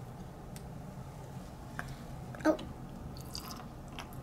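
Faint handling noises of a plastic squeeze bottle squirting water into a small plastic snow-globe dome: soft squishes and light clicks, with a short sharper one about two and a half seconds in, over a low steady hum.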